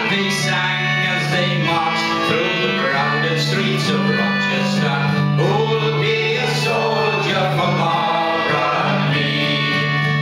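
Concertina and acoustic guitar playing a folk tune together, the concertina holding sustained chords, with singing over them.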